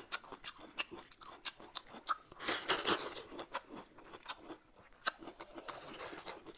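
Food being chewed and crunched, a run of sharp, irregular crunches and clicks, loudest about two and a half to three seconds in.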